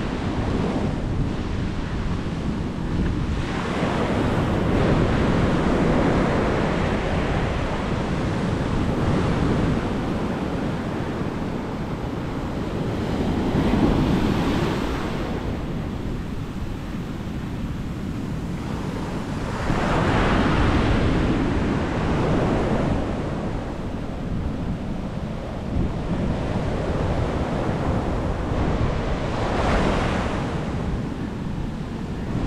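Ocean surf breaking and washing up a sandy beach, rising and falling every several seconds, with wind buffeting the microphone.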